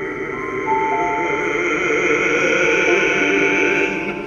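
Live classical music with a grand piano playing long, held notes.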